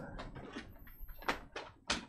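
A lull in a small room: faint rustling and a couple of short soft clicks or knocks, the clearest near the end, as a man shifts in his seat at a table microphone.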